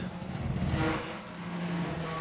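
TV drama soundtrack just after a light aircraft crashes down from the trees: a noisy rush that swells about half a second in and fades, with a faint low steady hum near the end.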